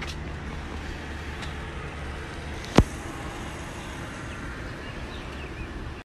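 Gas pump dispensing fuel into a car: a steady low hum over even background noise, with one sharp click about halfway through.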